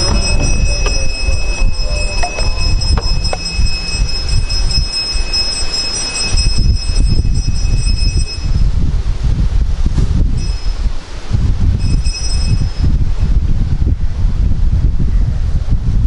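Wind buffeting an outdoor microphone: a loud, uneven low rumble. Over it, a few thin, steady high-pitched whine tones run through the first half, cut off about halfway, and come back briefly twice.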